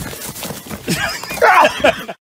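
A man's loud, wavering yell in alarm, rising and falling in pitch, starting about halfway in and loudest near the end as he falls backward.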